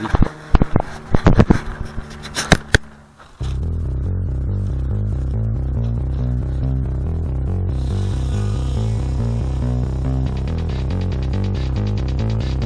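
A few loud knocks and clicks from handling, then electronic background music with a steady beat starts abruptly about three seconds in and carries on.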